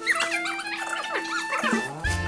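Background music: a held low note under quick, gliding high notes, with a fuller track and bass coming in right at the end.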